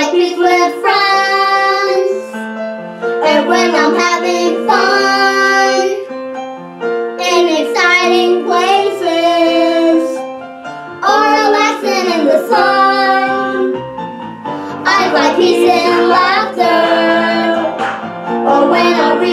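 A girl singing a song over a keyboard accompaniment, in five sung phrases of two to three seconds with short breaks between them.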